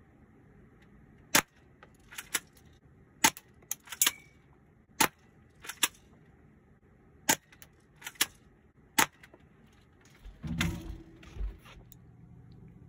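Small gun fired at a paper target: about a dozen sharp cracks spread over nine seconds, several in quick pairs, one followed by a brief ring. A longer, rough noise comes near the end.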